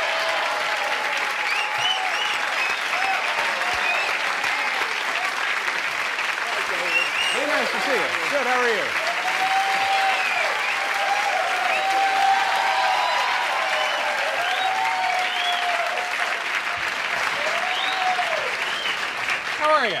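Studio audience applauding steadily, with voices in the crowd calling out and whooping over the clapping.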